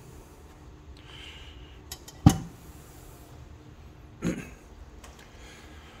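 Metal heater parts handled on a cloth-covered workbench: a few light clicks, then one sharp knock about two seconds in, and a duller bump about four seconds in, with faint rustling.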